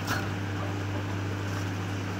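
Steady low electrical hum over an even hiss, like a small mains-powered motor such as a fan or pump running, with a brief faint tick right at the start.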